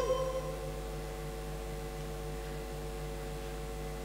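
The end of a held note of Quran recitation fades out in the first half-second, leaving a pause filled by a steady low electrical hum and hiss.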